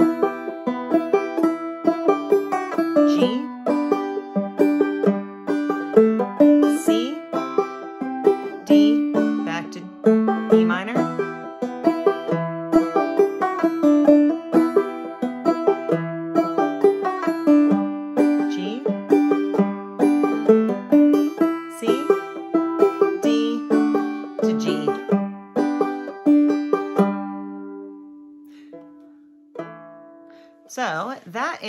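Clawhammer banjo playing the verse melody of a slow folk tune over E minor, G, C and D chords, with a steady stream of picked notes and brushed strums. Near the end a last chord is left ringing and fades away.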